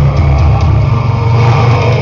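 Melodic death metal band playing live: distorted electric guitars, bass and drums in a dense, loud wall of sound with a heavy bass end.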